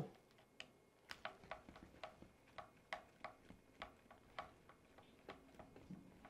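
Faint, irregular light ticks, about two to three a second, from a hand driver working small screws out of the plastic rear bumper mount of a Traxxas Slash 4x4 RC truck.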